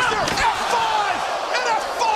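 A wrestler slammed down onto a ringside announce table: a heavy crash right at the start, followed by yelling voices.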